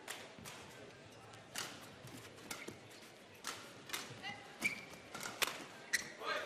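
Rackets striking a feather shuttlecock in a fast badminton rally: a string of about ten sharp hits, half a second to a second apart, with a couple of short squeaks from shoes on the court floor near the end.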